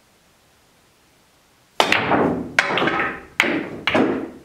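A pool shot: quiet at first, then about two seconds in the cue strikes the ball, followed by three more sharp clacks and knocks of billiard balls hitting each other, the cushions or a pocket. The knocks come roughly half a second apart, and each one trails off.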